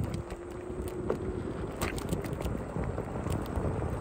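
Low rumble of wind buffeting the microphone and tyres rolling over rough, gravelly asphalt while riding a Ninebot electric scooter. A faint steady hum fades out about a second and a half in, and a few light ticks come near the middle.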